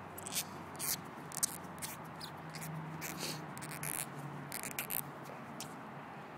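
Cotton swab being worked through a small carburetor part by hand: soft, irregular scratchy rubbing and handling noises, a dozen or so brief scrapes.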